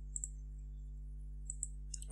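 A few faint computer mouse clicks, a pair near the start and a few more near the end, over a steady low electrical hum.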